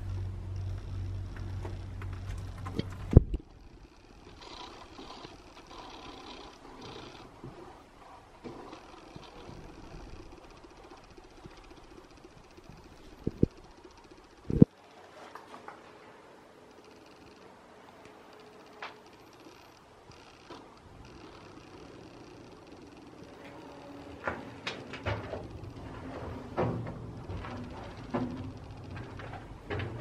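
Quiet interior noise with a steady low rumble for about three seconds, then a few sharp knocks: one a little after three seconds, two close together around thirteen to fifteen seconds, one near nineteen seconds, and a run of fainter taps and clicks late on, as someone moves about inside the locomotive's metal body.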